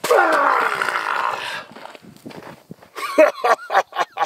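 A man's loud roaring yell, about a second and a half long and falling in pitch, as he throws a kick; then a run of short, sharp shouts near the end.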